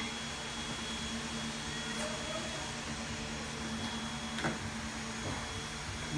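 A steady mechanical hum of room tone, with a couple of faint clicks from the cardboard gift box being handled, about two seconds in and again past four seconds.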